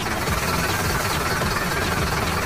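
Small electric motor running steadily, spinning a toy concrete mixer drum, with a dense buzzing rumble.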